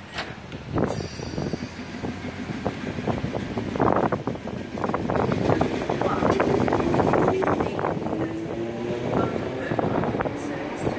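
Class 315 electric multiple unit moving slowly along the platform, with wheels clicking and knocking over the track. The sound grows louder about four seconds in, and a faint motor whine rises slightly in pitch through the second half.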